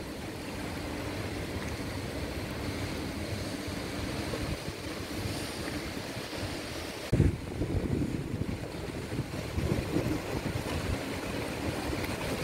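Floodwater rushing out through the raised spillway gates of a dam, a steady noise. From about seven seconds in, wind buffets the microphone in gusts.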